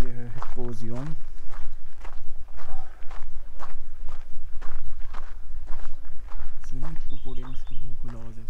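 Footsteps crunching on a dirt and gravel trail at a steady walking pace. A man's voice sounds briefly near the start and again near the end.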